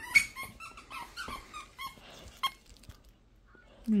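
A dog making a string of short, high whines and yips while playing tug. A sharp knock comes just after the start, and the squeaks die away about two and a half seconds in.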